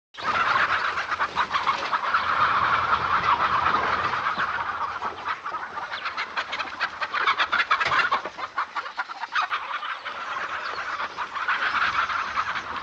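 A flock of chickens squawking and clucking without a break, many sharp calls overlapping as the birds scatter in alarm.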